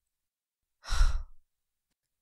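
A woman's single heavy breath about a second in, lasting about half a second: a frightened sigh on waking from a nightmare.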